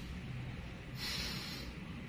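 One short, forceful breath through the nose, a snort-like hiss lasting under a second, about a second in, over a steady low background hum.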